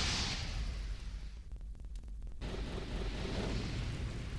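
Cinematic fire-and-rumble sound effect under an animated logo intro: a deep steady rumble with a hissing whoosh that fades over the first second. About a second and a half in it thins out to a few crackles, then the hiss and rumble swell back.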